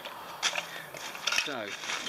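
Handling noise from a metal cook pot and its thin fabric stuff sack: crinkly rustling with two short light knocks, one about half a second in and another shortly before the end.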